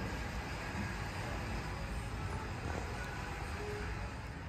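Steady low rumble and hiss of a large store's room noise, like air handling, with no distinct events.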